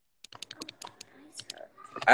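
A run of quick, irregular faint clicks, like keys or taps on a device, under faint low voices.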